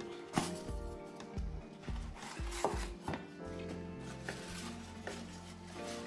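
A polystyrene foam shipping box being prised open by hand. The foam lid gives a series of sharp creaks and knocks through the first three seconds, then there is quieter rubbing and rustling as the paper packing inside is handled.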